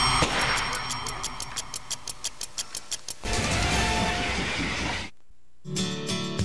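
TV commercial soundtrack: music with a run of rapid, evenly spaced ticks, about five a second, for the first three seconds, then a fuller, noisier passage. After a short break near the end, new music starts.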